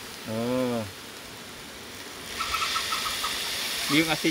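Chopped food frying in an open wok, the sizzle growing louder about two and a half seconds in. A short voiced sound from a person comes about half a second in.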